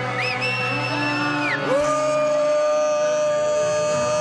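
Loud live music in a crowded venue, with long held vocal notes: a high one over the first second and a half, then a louder, lower bellowed note held from about two seconds in, close to the microphone.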